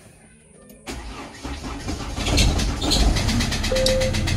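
Chevrolet Cruze's 2.0-litre diesel engine starting after many days unused: about a second in it cranks and catches, then settles into a steady, louder idle with an even clatter.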